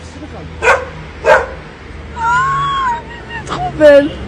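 A dog barking twice in short sharp barks, then a longer call that rises and falls in pitch about halfway through.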